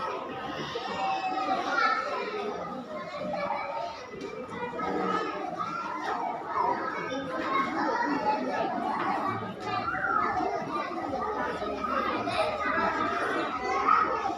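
Many young children's voices at once, overlapping chatter and calls from a group of pre-school children.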